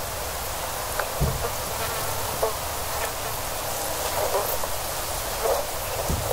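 A steady hiss with a low rumble beneath it and a few scattered soft clicks.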